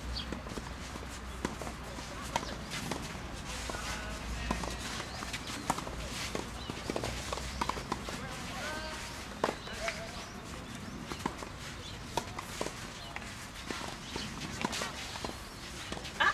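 Tennis rally: sharp pops of rackets striking the ball at irregular intervals, with footsteps on the court and faint voices.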